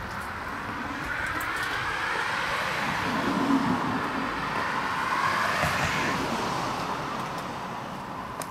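A car passing on the road outside: tyre and engine noise that swells over a few seconds and then fades away.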